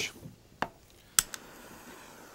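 A light knock, then a sharp click about a second in followed by a faint steady hiss: a handheld gas blowtorch being lit.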